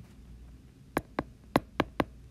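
A stylus tip tapping against a tablet's glass screen while handwriting: about five sharp clicks in quick succession in the second half, over a faint low hum.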